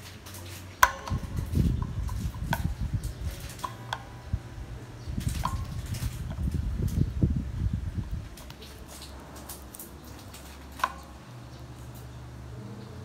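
Plastic pen clicking and knocking against the metal bridge saddles of a Stratocaster-style electric guitar as it is set across them, with a low handling rumble from about one to eight seconds in. There is a last single click near the end.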